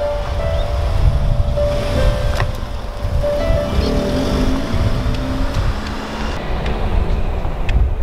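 Piano background music over a loud, uneven low rumble of wind on the microphone and an SUV driving off.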